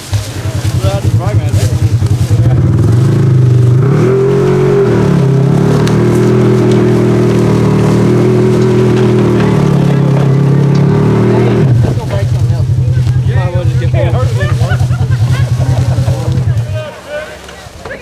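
Polaris RZR XP 1000's parallel-twin engine running under load as the crashed car is driven off on its broken rear-right suspension. The engine revs up a few seconds in and holds high revs. It drops back to a lower, steady note about twelve seconds in and stops shortly before the end.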